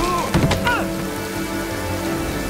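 Heavy rain falling steadily, with a couple of short thuds a third to half a second in, in a fistfight.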